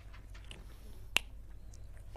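A whiteboard marker's cap snapping shut: one sharp click about a second in.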